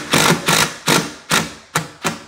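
DeWalt 20V cordless impact driver hammering a screw through a handrail bracket into the wall: a longer burst at the start, then short bursts about every half second. The screw is biting into wood blocking behind the drywall.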